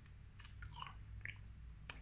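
Faint mouth clicks and lip smacks, a few small ones scattered over a low steady room hum.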